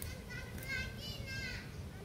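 High-pitched children's voices calling and talking, twice in short bursts, over a steady low background rumble.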